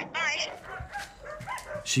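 A dog whining briefly in a high, wavering pitch, followed by fainter dog noises.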